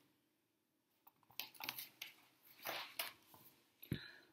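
Faint rustling and handling of a picture book's paper pages: a few soft, irregular rustles and light clicks starting about a second in.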